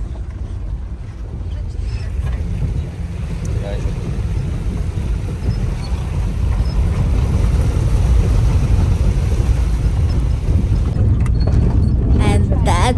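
Van engine and drivetrain rumble heard from inside the cabin as it drives through a shallow river ford, a steady low rumble that grows louder through the middle.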